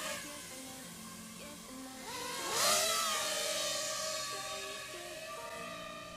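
HGLRC Rekon 5 five-inch FPV quadcopter's motors spooling up for takeoff on a 4S Li-ion pack. About two seconds in, a rising whine climbs to its loudest, then holds a steady pitch and slowly fades as the quad climbs away.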